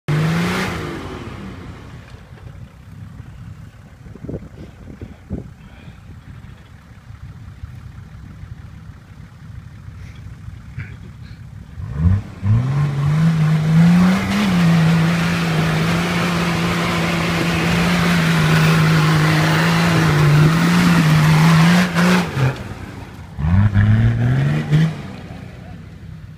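Nissan Patrol's 2.8-litre diesel engine working a four-wheel drive up a muddy slope. It revs at the start and runs low and quieter for several seconds, then the revs climb about halfway through and stay high for around ten seconds before dropping. A short rising rev follows near the end.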